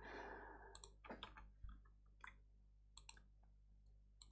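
Faint computer mouse clicks, about seven or eight scattered through a few seconds, with a soft exhale at the very start.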